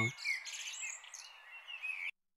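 Small birds chirping and tweeting in short, scattered high calls, a thin, quiet ambience sound effect.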